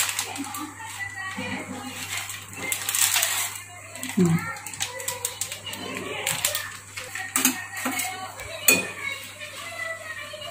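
A plastic Maggi noodle packet crinkling as its remaining contents are shaken out into a metal kadhai, followed in the second half by a few sharp clinks of a metal spoon against the pan as stirring begins.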